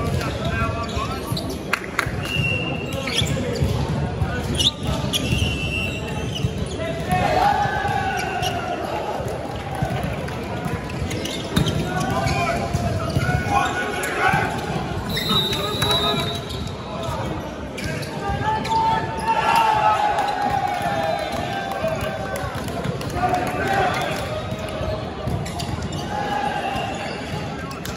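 Indoor volleyball play: the ball being struck and bouncing on the wooden sports-hall court, with repeated sharp impacts, a few short high sneaker squeaks and players shouting calls, all echoing in the large hall.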